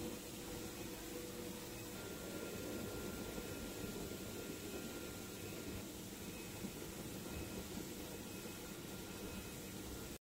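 Steady machinery hum and hiss of a factory hall, with a faint steady whine that shifts to a higher pitch about two seconds in.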